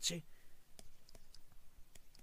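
A few faint, irregular clicks of a stylus tapping on a tablet as an equation is handwritten, after a brief spoken syllable at the start.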